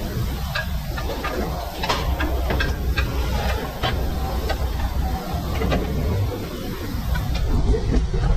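Light metallic clicks and knocks as the front suspension parts (steering knuckle and lower control arm) of a Toyota Land Cruiser are handled and shifted by hand, over a steady low workshop rumble.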